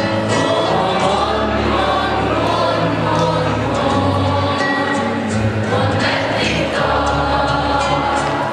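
A large choir of teenage students singing, with steady low instrumental accompaniment underneath.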